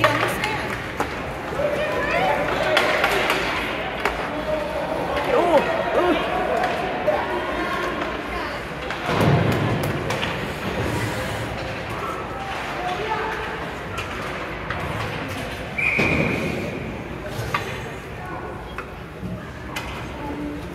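Indoor ice hockey rink during play: spectators' voices and shouts over the hall's echo, and heavy thuds of pucks or players hitting the boards, loudest about nine seconds in. A short, steady referee's whistle sounds about sixteen seconds in, stopping play.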